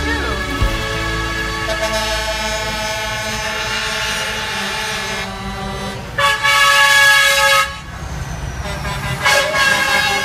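Semi-truck air horns honking over one another in long, held tones. The loudest blast starts about six seconds in and lasts about a second and a half, and another begins near the end.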